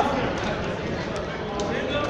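Steady background noise of a large gymnasium, with faint voices near the end.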